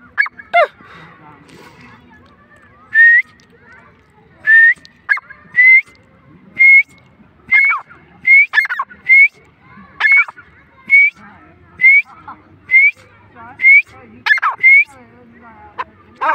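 Grey francolin calling: a run of loud, short, sharp notes repeated about once a second, most hooking upward at the end and some with a falling slur, beginning after a brief pause about three seconds in and carrying on until near the end.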